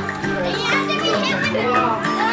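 A group of children shouting and laughing over background music.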